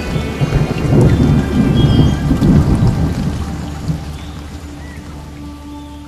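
Thunder rolling: a long low rumble, loudest in the first half, dying away over the last few seconds, with a hiss of rain.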